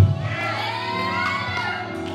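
Congregation voices calling out in response, with long rising and falling calls, over held chords of background church music.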